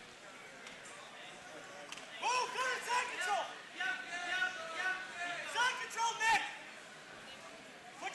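Voices shouting from cageside, raised calls that come and go from about two seconds in over a steady hall murmur, with one sharp knock about six seconds in.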